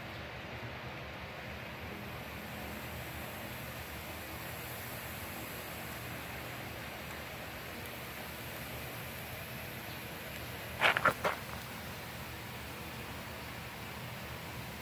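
Quiet steady outdoor background noise with a faint high hiss, and one brief short sound about eleven seconds in.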